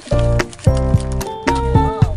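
Background music: a bright melodic tune over a bass line, with a regular clicking percussive beat.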